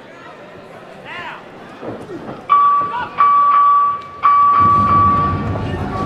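End-of-round horn: a steady, high electronic tone sounding three times in quick succession about halfway through, each blast longer than the last, with abrupt starts and stops.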